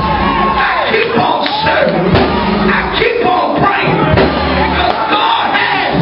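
A preacher shouting into a microphone in a loud, pitched, chanting cadence over backing music with held low notes, while the congregation shouts and calls back.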